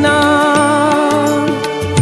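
Bengali devotional bhajan to Loknath Baba: a male singer holds one long sung note, wavering slightly, over tabla and keyboard accompaniment with a steady beat.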